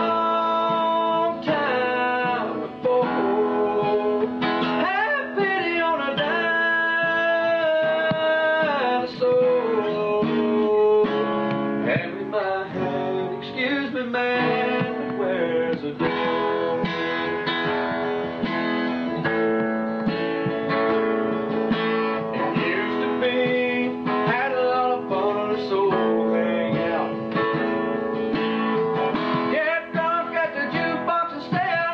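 Acoustic guitar strummed and picked in a country song, with a man singing.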